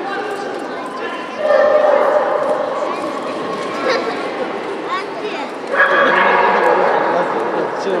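A dog barking and yipping amid voices, with louder stretches about a second and a half in and again near six seconds.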